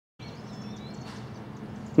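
Outdoor background noise starting abruptly a moment in: a low steady hum, with a brief high bird chirp near the middle.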